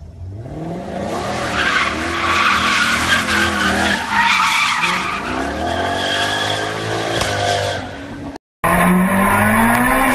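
Car drifting on asphalt: tyres squealing loudly while the engine revs rise and fall, for about eight seconds. After a brief cut, a different car's engine runs at steady high revs.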